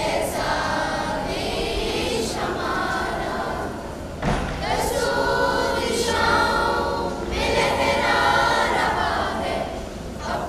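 A school choir of girls and boys singing together, their voices sustained and continuous throughout.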